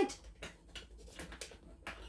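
Light, irregular clicks and taps from a cellophane-wrapped cardboard jigsaw puzzle box being handled as it is being opened.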